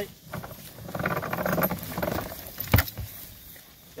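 A steel log chain rattling and clinking as it is lifted and handled, with one sharp metal clank a little under three seconds in, the loudest moment.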